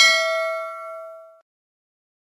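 A single bell 'ding' sound effect from the notification-bell click of a subscribe animation, struck once and ringing with several tones that fade out about a second and a half in.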